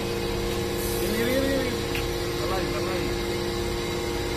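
Iron chip briquetting press running, its motor and hydraulic pump making a steady hum of several constant tones over a low rumble, with a faint voice in the background.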